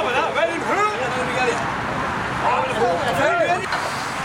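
Indistinct chatter of several people talking at once, voices overlapping.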